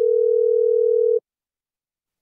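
A steady single-pitch telephone tone, a plain beep with a click near its start, that cuts off abruptly about a second in.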